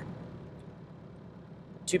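A low, steady background hum during a pause in speech, with a man's voice starting again near the end.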